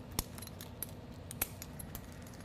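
Metal clips and hardware of resistance bands clinking as the handles are unclipped and swapped for straps: a few light metallic clicks, the sharpest about a quarter of a second in and another about a second and a half in.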